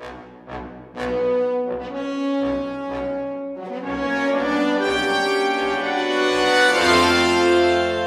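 Sampled orchestral brass section, Sample Modeling and Cinematic Studio Brass layered together, playing back a MIDI mockup: sustained brass chords that move from note to note and grow louder, with a deeper, fuller note coming in near the end.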